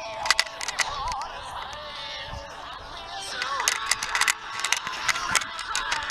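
Background music with a wavering melody, broken by clusters of sharp clicks and knocks near the start and again in the second half.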